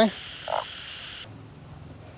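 Frogs croaking at night: a short croak about half a second in, over a steady high-pitched chorus that cuts off a little past halfway.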